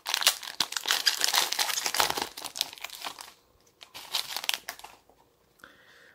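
A trading-card booster pack's foil wrapper crinkling as it is torn open and handled. The dense crackle lasts about three seconds, and a shorter burst comes about four seconds in.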